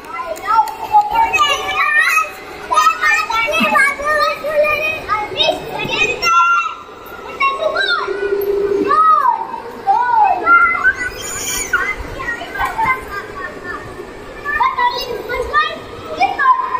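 Hubbub of many children's voices talking and calling out at once, with no single voice standing out.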